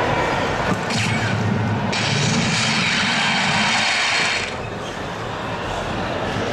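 Soft-tip electronic dartboard playing its whooshing electronic effect sounds as thrown darts register a score. The effects are loudest from about two seconds in until past the middle, then fall back to hall background noise.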